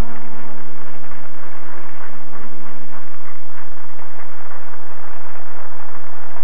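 A tango orchestra's final held chord dies away within the first second, and a loud, even hiss takes over for the rest.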